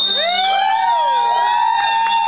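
Several people whistling at once in approval, long high whistles that glide up and down in pitch and overlap one another.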